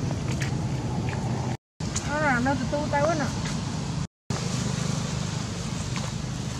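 A young pigtail macaque giving a short run of high, quickly wavering calls about two seconds in, over a steady low hum; the sound cuts out completely twice for a moment.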